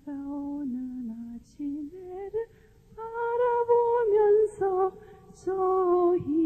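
A woman singing a slow Korean melody, holding long steady notes. She sings louder and higher from about halfway through.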